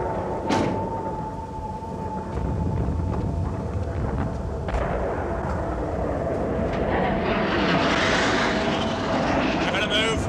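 Low, steady engine rumble with a constant hum inside a military troop transport. There is a short knock just after the start, and a rushing noise swells and fades about seven to nine seconds in.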